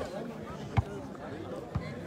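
Background murmur of a crowd of spectators, with two dull thumps about a second apart, the first louder.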